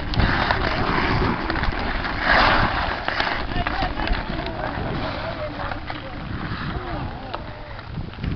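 Outdoor hockey on natural ice: skate blades scraping the ice and a few sharp stick-on-puck clacks, with distant players' voices and wind rumbling on the microphone. A louder hissing scrape of the ice comes about two seconds in.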